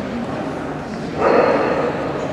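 Low murmur of voices in a hall, then a dog, an Afghan hound, barks loudly for about half a second just past a second in.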